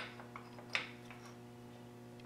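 A light metal clink about three-quarters of a second in, with a fainter tick before it, as the homemade carriage stop is set in place against the Craftsman lathe's bed; a steady low hum runs underneath.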